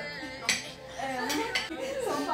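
Spoons and forks clinking against plates and bowls while people eat: a sharp clink about half a second in, then a couple more near the middle.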